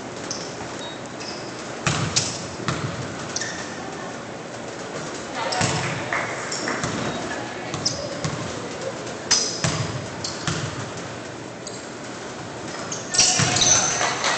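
A basketball bouncing on a hardwood gym floor in a handful of scattered bounces, ringing slightly in the large hall, over faint background chatter.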